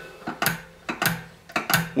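Throttle arm and linkage on a Honda GX200 carburetor, its governor removed, worked open by hand and snapping back under a newly fitted return spring, giving a few sharp metallic clicks.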